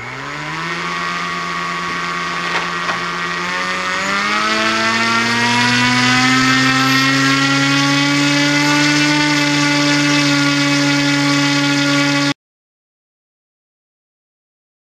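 Small brushless outrunner motor spinning a 6x4.5 ABS propeller on a thrust stand, run up to hover-level thrust of about 150 grams. It spins up quickly, rises in pitch again in a second step about four seconds in, then runs steadily. The sound cuts off abruptly near the end, leaving silence.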